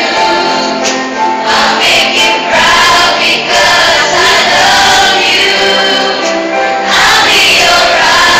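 A children's choir singing together, voices held on long notes that change every second or so.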